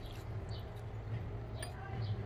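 Low steady background hum with a few faint high chirps like distant birds. A faint click about one and a half seconds in, as the charge-indicator button on the Skil PWRCore battery is pressed and its level lights come on.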